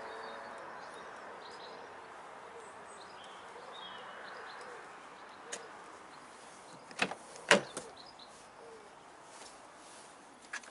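Two sharp clicks about half a second apart a little past the middle, the door handle and latch of a BMW 325i convertible releasing as the door is opened, over a faint outdoor hiss with a few bird chirps.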